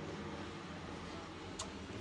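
Faint steady low hum inside a bus cabin, with one small click about one and a half seconds in.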